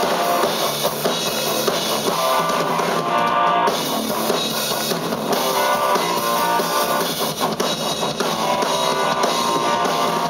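Live rock band playing an instrumental passage with no singing: electric guitar over a drum kit and bass guitar.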